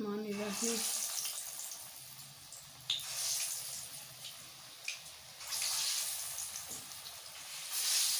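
Gourd kofta balls deep-frying in hot oil in a wok, a steady sizzle. The sizzle swells up several times as more raw balls are lowered into the oil.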